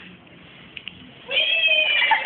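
Quiet at first with a couple of faint clicks, then a little past halfway a loud, high-pitched, drawn-out vocal cry with a wavering pitch sets in and carries on.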